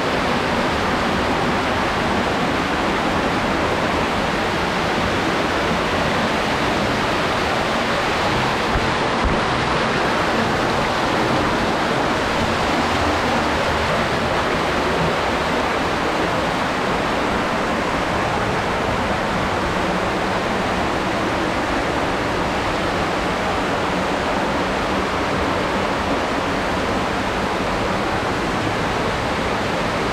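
Fast-flowing underground stream cascading over rocks and a small waterfall: a steady, loud rush of water.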